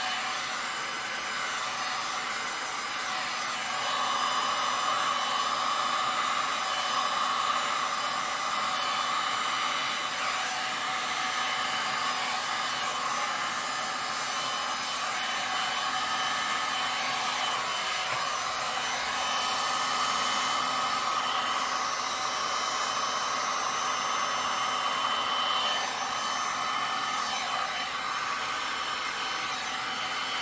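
Electric heat gun blowing hot air steadily over wet epoxy resin, a continuous rushing blow with a motor whine. It grows louder for several seconds twice.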